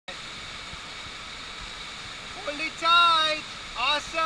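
Steady rush of water pumped across an artificial surf-wave pool. About two and a half seconds in, a high voice calls out with one long, slightly falling cry, and a second short call comes near the end.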